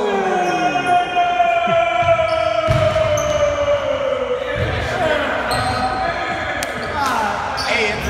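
A group of young men shouting and yelling in excitement in a gym hall, led by one long held yell that slowly falls in pitch over the first few seconds. A few thuds of a basketball bouncing on the hardwood floor come through the cheering.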